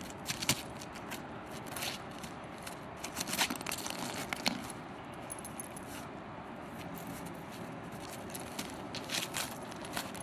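A dog digging into ice-crusted snow, its paws scratching and breaking the crust in irregular bursts of crunching and scraping clicks, busiest in the first half and again near the end.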